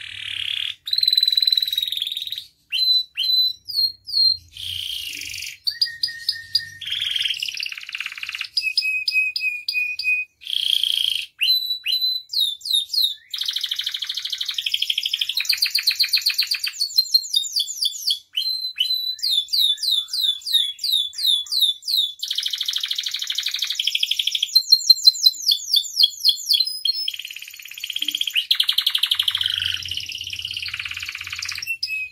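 Domestic canary singing a long, almost unbroken song of varied phrases: fast trills of repeated notes, quick downward-sweeping runs and buzzy rolls, with only brief gaps between them.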